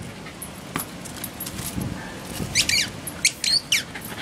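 A small terrier lets out a run of short, high-pitched squeals in the second half, each falling in pitch, while worked up in a tug-of-war game.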